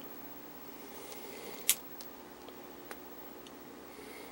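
Faint steady hum from a running vintage RCA tube television chassis, with one sharp click a little under two seconds in and a couple of fainter clicks after it.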